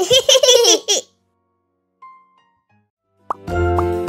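Cartoon voices laughing together for about a second, then a short silence; near the end, bright children's music starts over a steady bass.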